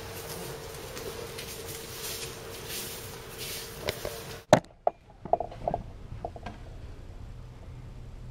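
Room tone with a steady faint hum. About halfway through there is a sharp click, the background suddenly drops quieter, and a few short taps and knocks follow over the next two seconds.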